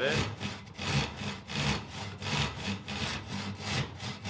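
Hand saw cutting across a pine 2x4, a steady run of short back-and-forth rasping strokes as the first kerf is started on the marked line.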